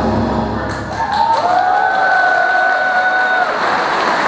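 Recorded dance music ends within the first second, and audience applause and cheering start and grow. A single long note is held for about two seconds over the clapping.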